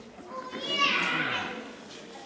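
A toddler's high-pitched vocal squeal, about a second long and falling in pitch, starting about half a second in.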